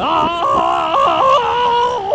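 A cartoon character's voice distorted by an audio effect, drawn out into one long wavering cry that glides up at first and then holds.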